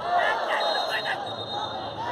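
Football stadium crowd noise with voices calling and shouting, plus a faint steady high tone.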